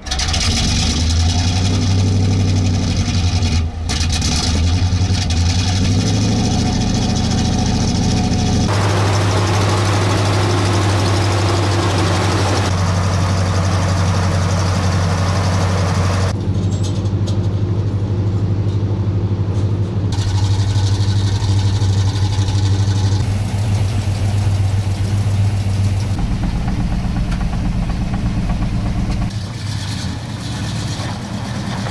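A ZIL-131 army truck's engine starting and then running at a steady idle with a strong low hum. Its tone changes abruptly a few times.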